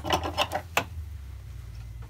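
A few short rustles and clicks of a quilt being handled and laid down on a sewing machine bed in the first second, then a low steady hum.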